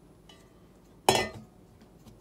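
A stainless steel mixing bowl set down on a stone countertop: one loud metallic clank with a brief ring about a second in, after a faint tap near the start.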